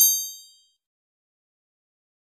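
A bright, high-pitched chime: several metallic tones struck in quick succession, ringing out and fading away within about half a second.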